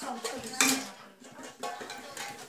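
A metal tin clattering and clinking as it is picked up and handled, in a few short irregular knocks, the loudest about half a second in.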